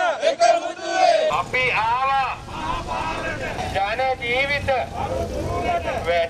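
A crowd of protesters chanting slogans together in repeated phrases. There is a cut about a second in to another group's chant, which has a low rumble underneath.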